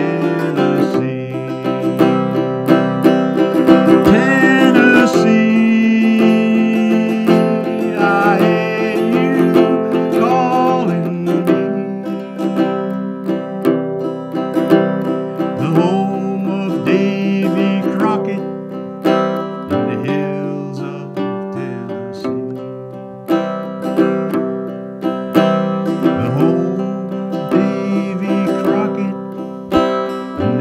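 Instrumental folk music led by a strummed small acoustic guitar, with held notes from another melody line sounding over it.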